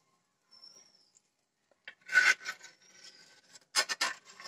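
Slotted steel spoon scraping and stirring across the bottom of a pan with tempering seeds in oil. One loud scrape comes about two seconds in, softer scraping follows, and a second loud scrape comes near the end.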